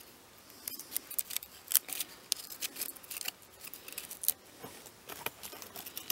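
Knife blade cutting and scraping along a thin split stick of dry wood: a run of short, sharp strokes at uneven intervals.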